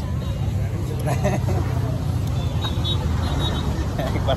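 Steady rumble of road traffic, with faint voices nearby.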